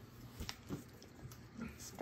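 Faint, wet chewing of a child eating a strawberry, with a few soft mouth clicks.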